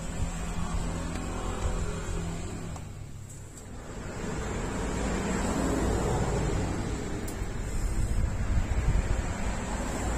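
Passing motor traffic: a steady engine hum, then a louder rushing swell with low rumble from about four seconds in.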